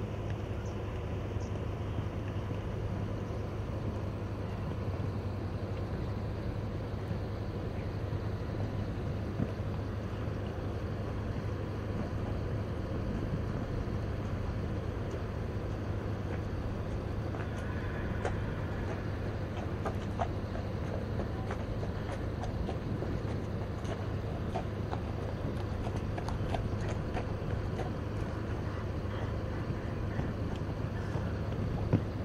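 Horse cantering on a sand arena, its hoofbeats heard over a steady low rumble. Short, sharper clicks come more often in the second half.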